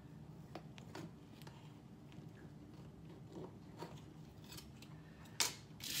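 Metal offset spatula scraping and ticking faintly against an aluminum tube cake pan as it is run around the center tube to loosen an angel food cake. A louder clatter comes near the end.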